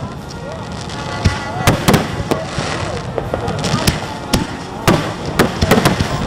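Fireworks going off: about a dozen sharp bangs at irregular intervals, over a steady crackling haze.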